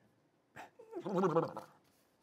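A person imitating a contented horse, a short fluttering vocal sound about a second in.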